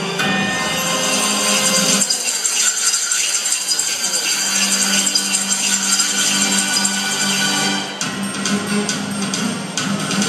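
Routine music playing through a large hall's sound system, with an abrupt change in the music about two seconds in and again near the end.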